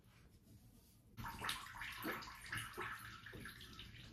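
Cold water running from a bathroom sink tap and splashing, starting about a second in and going on unevenly.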